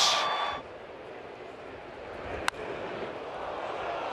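Ballpark crowd cheering a home run, cut off abruptly about half a second in. A low, steady stadium crowd murmur follows, with a single sharp click near the middle.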